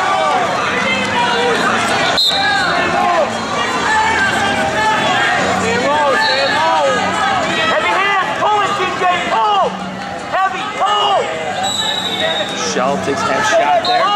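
Wrestling shoes squeaking on the mat again and again as two wrestlers hand-fight and shuffle in the standing neutral position. There is one sharp click about two seconds in, and voices carry from the gym.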